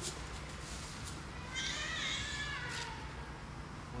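An aikido partner being thrown and pinned face down on the mat. There is a knock near the start, then a high squeak lasting about a second midway that falls in pitch, with another knock as it ends.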